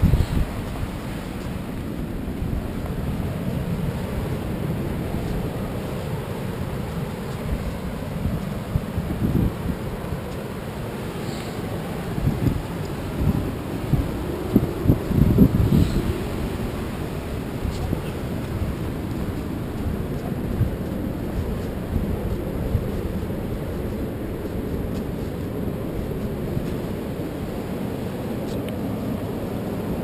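Wind rumbling on a body-worn action camera's microphone, with a few louder bumps in the middle.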